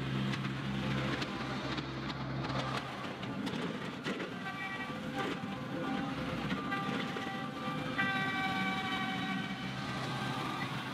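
John Deere 2038R compact tractor's three-cylinder diesel engine running at work on the gravel drive, with a steady low hum over the first few seconds. Background music comes in over the second half and is strongest near the end.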